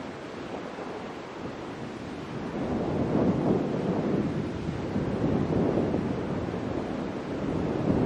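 Wind rumbling and buffeting on the microphone, a steady noise that swells louder about two and a half seconds in and stays up.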